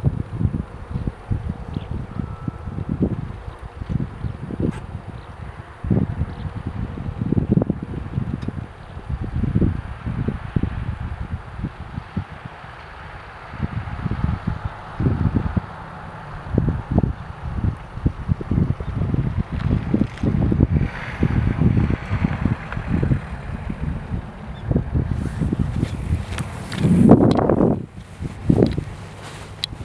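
Wind buffeting the microphone in irregular low rumbling gusts, with a louder burst just before the end.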